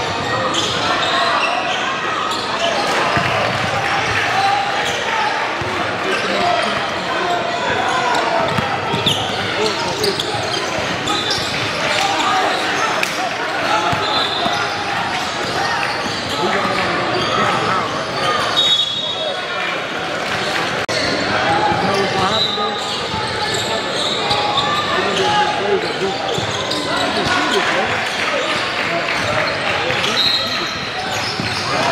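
Basketball game in a large gym: the ball bouncing on the hardwood court and sneakers giving short high squeaks a few times, over a steady hubbub of spectators and players talking that echoes in the hall.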